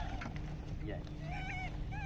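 Rhesus macaques giving short coo calls, several arched rising-and-falling calls in the second half.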